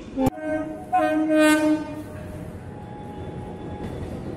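Train horn: a brief note near the start, then a steady blast of about a second, with train running noise underneath.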